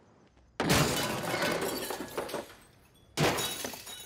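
Two crashes of belongings thrown onto a hard floor, glass shattering and small objects clattering: the first about half a second in, rattling on for nearly two seconds, the second shorter, a little after three seconds.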